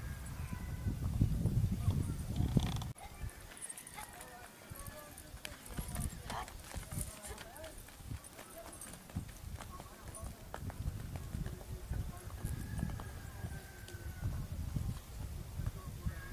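A ridden donkey's hooves clopping on a dirt road in irregular steps at a walk. A low rumble fills the first three seconds and cuts off suddenly.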